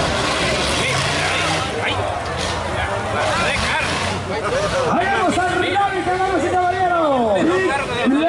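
Off-road buggy engine working under load, mixed with the voices of spectators around the course. From about five seconds in, a loud pitch swings up and down over and over.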